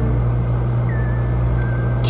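A steady low hum that holds an even level throughout, with faint thin wavering tones above it.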